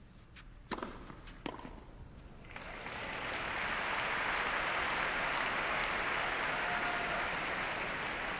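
Two tennis ball strikes on racket strings, under a second apart, then the stadium crowd breaks into sustained applause as the point is won.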